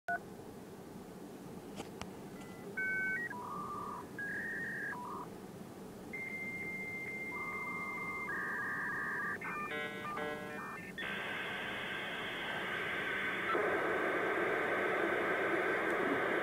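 Dial-up modem connecting: short dialing beeps, then a long steady answer tone and pairs of beeps. About ten seconds in comes a burst of warbling handshake tones, which gives way to a steady hiss of data.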